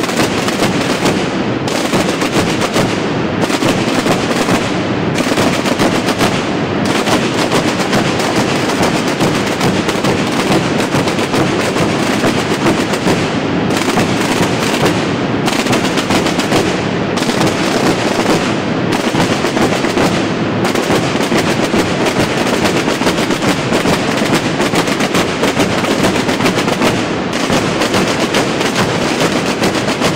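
A massed group of Bajo Aragón drums playing together: tambores (snare-type drums) beaten with sticks and big rope-tensioned bombos struck with mallets, in a dense, continuous, loud drumming with short recurring breaks every couple of seconds in places.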